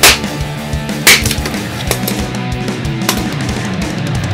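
Background music plays throughout, over sharp, loud chops of a small axe into a log: one right at the start and one about a second in, with a fainter knock near three seconds. The axe has a 3D-printed PETG handle and splits the wood.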